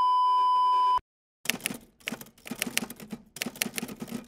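A steady beep tone that lasts about a second and cuts off abruptly. After a short silence comes a rapid run of typewriter-style key clacks in a few quick clusters, a typing sound effect.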